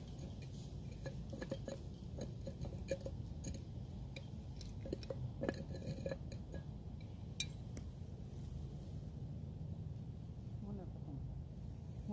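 A walking cane used as a hammer, knocking something into place: a run of irregular light clinking taps, with one sharper knock about seven seconds in.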